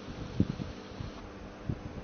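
A phone's microphone picking up handling noise: a steady background hiss with a faint hum, a sharp low thump about half a second in and a smaller one near the end, as the phone is shifted in the hand.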